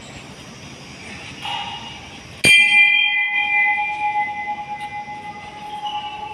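A metal temple bell is struck once, sharply, about two and a half seconds in, then rings on with a wavering, slowly fading hum. A lighter metallic tap comes about a second before the strike.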